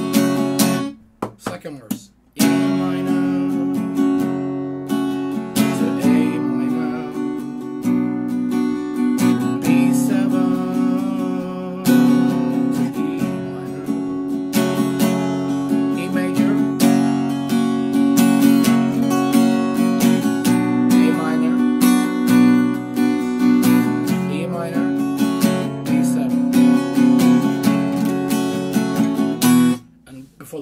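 Acoustic guitar with a capo on the second fret, strummed in open chords. The strumming stops briefly about a second in, then runs on steadily.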